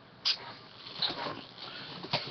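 Plastic VHS tape cases being handled: one sharp click about a quarter of a second in, then softer knocks and rustling.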